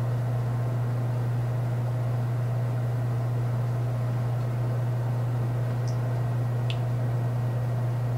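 Steady low hum with a light hiss, the room's background noise, unchanged throughout; two faint ticks about six and seven seconds in.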